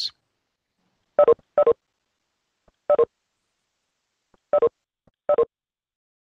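Cisco Webex participant-leave notification chime sounding five times at uneven intervals, each a short two-note electronic blip, one for each attendee dropping out of the call.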